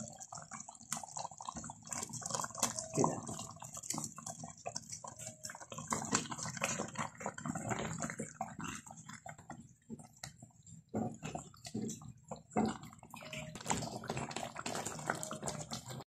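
Thick tomato-chili sauce simmering in a pot, with irregular soft pops and plops of bubbles breaking at its surface.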